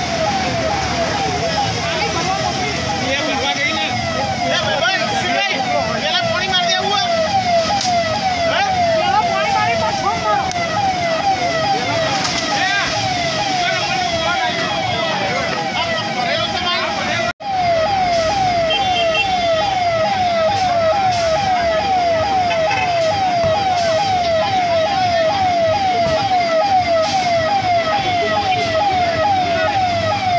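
Emergency vehicle siren in a fast yelp, its pitch sweeping about twice a second, with other sweeping siren tones layered above it. The sound drops out for an instant a little past halfway.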